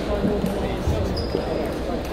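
Table tennis rally: the celluloid-type ball clicking off the bats and bouncing on the table in quick succession, over the chatter and other games of a busy, echoing sports hall.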